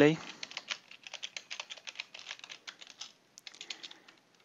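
Typing on a computer keyboard: a quick, uneven run of key clicks, many per second, that stops just before the end.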